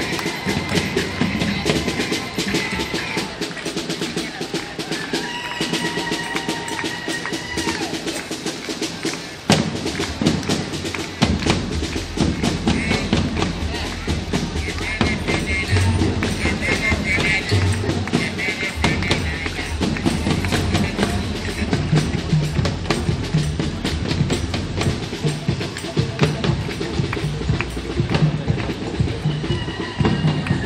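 Parade music with steady drumming and held brass-like notes, over the voices of a crowd. The sound changes abruptly about a third of the way through.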